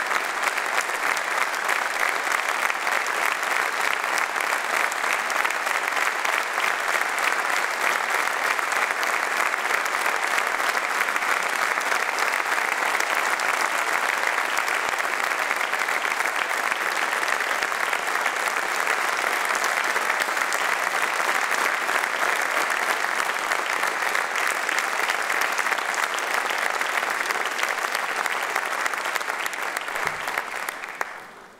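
A large seated audience applauding: dense, steady clapping that holds at one level without a break.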